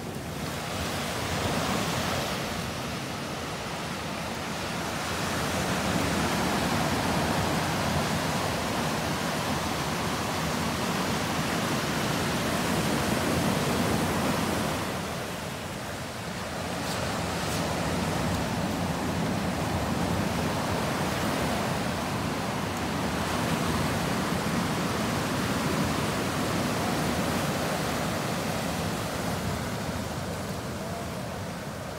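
Ocean surf breaking and washing up a sandy beach: a continuous rush that swells and eases with the waves, dipping for a moment about halfway through.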